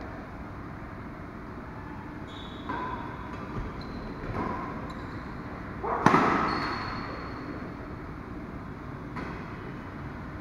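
Badminton racket strings hitting a shuttlecock during a rally: several light hits from the far side of the court, then one loud overhead hit close by about six seconds in, echoing in the hall.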